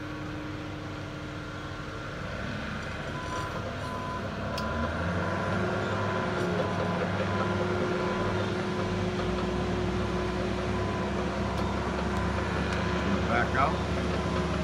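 Heavy diesel earthmoving machines, a tracked bulldozer and a wheel loader, running on the beach sand. Their engines grow louder about a third of the way in, and a reversing alarm beeps for a few seconds in the first half.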